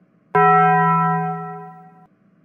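Cartoon slap sound effect: a sudden loud clang about a third of a second in that rings on one steady pitch and fades away over about a second and a half.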